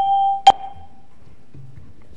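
A bell ringing as a debate's time-up signal. One ring fades out, then a last short ring about half a second in dies away within half a second, leaving low room tone.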